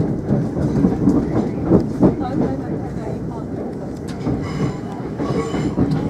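Passenger train running at speed, heard from inside the carriage: a steady rumble with the wheels knocking over rail joints and points, the knocks bunched in the first couple of seconds. A faint high squeal comes in after about four seconds.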